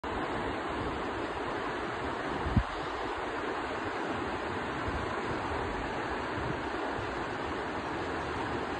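Steady outdoor rushing noise, like fast water or wind, at a constant level, with a single short low thump about two and a half seconds in.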